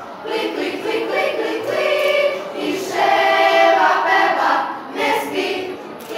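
Girls' choir singing, the voices rising to their loudest a little past halfway through.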